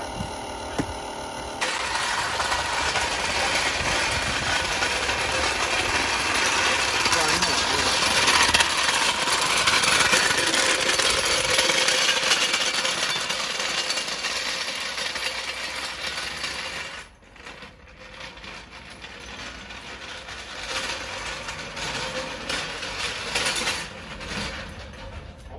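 A steel floor jack's wheels rolling and rattling over an asphalt driveway, a loud continuous rattle from a second or two in; it drops sharply about seventeen seconds in to a quieter rolling rattle.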